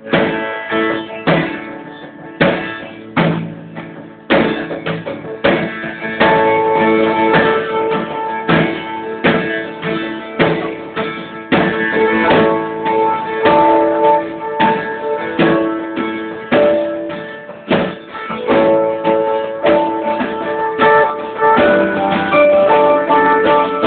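Live band playing: electric guitars over a drum kit, with sustained guitar notes and repeated drum hits.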